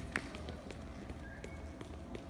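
Scattered hand claps from an audience as applause dies away, a few sharp claps spaced out after a denser burst.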